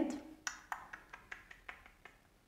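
A quick run of light clicks, about eight over a second and a half, coming roughly five a second.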